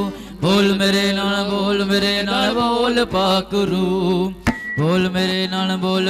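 Amplified devotional singing through a microphone and PA, a voice holding long, steady notes. The sound breaks off abruptly about four and a half seconds in and then picks up again.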